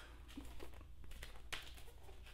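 Faint rustling and light taps of a cardboard LP jacket being turned over and handled, with one sharper click about a second and a half in.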